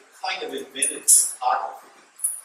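A man talking to an audience in a room: ordinary lecture speech, nothing else stands out.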